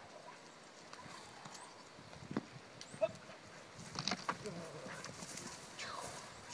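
A young dog and its handler moving about on grass: sparse short knocks and scuffs, with a faint voice now and then.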